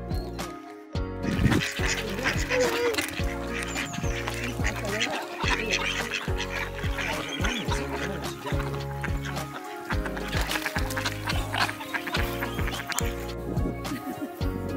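Background music with a steady beat, with ducks quacking over it from about a second in until near the end.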